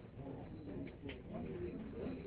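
Quiet hall room tone with a faint murmur of distant voices and a few soft knocks or rustles.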